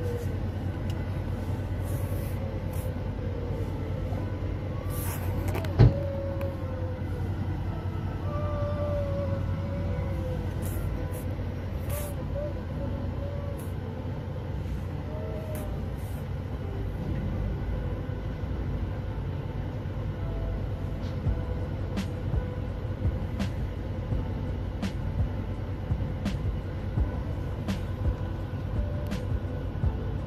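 Steady low rumble of a vehicle heard from inside, with faint voices in the background. There is one sharp knock about six seconds in, and light ticks come about once a second later on.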